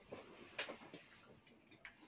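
Near silence: room tone with two faint clicks, one about half a second in and one near the end.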